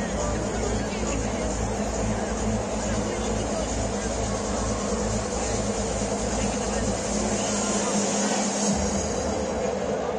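Stadium ambience: a steady wash of crowd noise under music with a regular pulsing bass beat. The bass drops out for about a second some eight seconds in.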